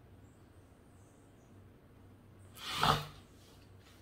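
Quiet room tone, broken by one short breath-like sound from a person about three seconds in.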